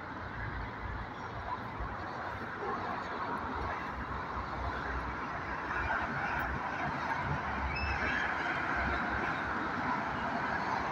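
Steady outdoor street noise of traffic, with a low wind rumble on the microphone, growing slightly louder toward the end.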